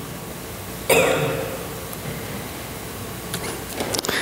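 A woman clearing her throat once, about a second in, close to her headset microphone.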